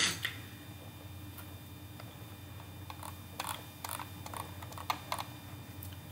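A few light clicks and taps at a computer, with a sharper click at the very start and more scattered through the middle and later seconds, over a faint steady hum.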